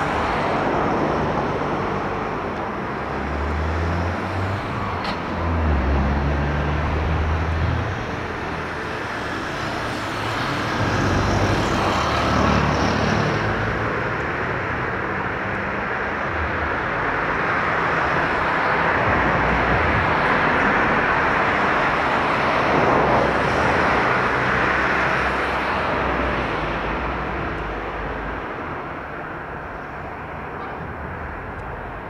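Gulfstream G550 business jet taxiing, its two Rolls-Royce BR710 turbofans at low power giving a steady jet rush that swells past the middle and fades near the end. Low rumbling bursts come in a few seconds in and again around twelve seconds.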